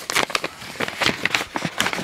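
Paper seed packet crinkling and rustling as it is handled, a run of small irregular crackles.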